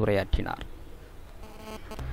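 A man's speech breaks off about half a second in, leaving faint background noise and, near the end, a faint buzzing.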